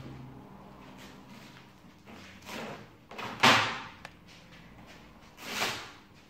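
A cured fibreglass mould being pried off its pattern with a plastic demoulding wedge. The laminate gives three noisy bursts as it pulls free. The loudest and most sudden comes about three and a half seconds in.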